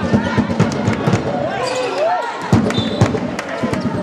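A basketball game played on a wooden court: the ball bouncing with repeated sharp knocks, players' feet on the floor, and players' voices calling out.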